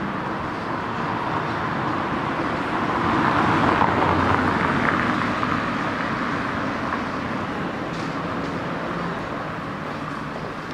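A car driving past on a stone-paved street. Its tyre and engine noise swells to a peak about four seconds in, then fades as it moves away, over a steady background of street traffic.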